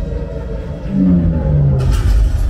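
Air-raid exhibit soundtrack played over speakers: a loud, deep rumble of explosion effects mixed with music. About halfway through, a couple of short tones step downward, and a sharper burst of noise starts just before the end.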